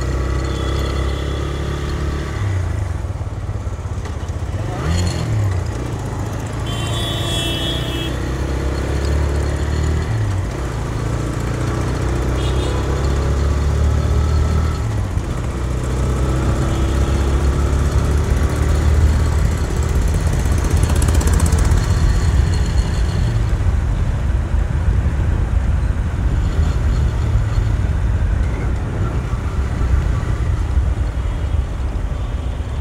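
TVS Raider 125's single-cylinder engine running under way on the open road, a steady low drone with a few brief dips and rises in engine pitch in the first ten seconds, growing a little louder in the second half. A short high warbling tone sounds about seven seconds in.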